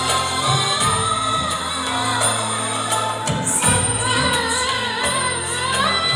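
A woman singing an Indian-style song into a microphone over a backing track, played through loudspeakers, with sustained low bass notes under the melody.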